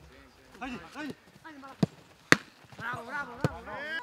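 A football kicked on grass three times, sharp thuds about two seconds in, half a second later (the loudest) and once more near the end, among players' shouts.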